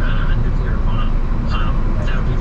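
Car cabin noise while driving on a wet freeway: a loud, steady low rumble of engine, road and tyres on the rain-soaked surface. A news broadcast on the car's radio talks faintly underneath.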